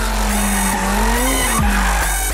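McLaren 720S sliding on a skid pad: tyres squealing and the engine note rising slowly, then falling away near the end. Electronic music with a heavy bass plays over it.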